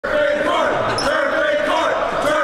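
Basketball gym sound: a ball bouncing on the court amid people's voices.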